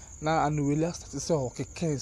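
A man speaking in short phrases, over a steady high-pitched whine that runs underneath.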